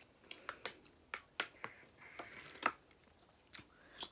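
Someone drinking from a plastic bottle: a string of faint, short, sharp clicks and gulps, about eight or nine in four seconds, with a brief soft hiss a little past the middle.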